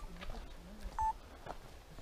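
Footsteps on a gravel forest path, a few faint crunching steps, with one short steady high tone about a second in.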